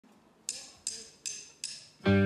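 Four sharp, evenly spaced percussive clicks, about two and a half a second: a count-in just before the band starts playing.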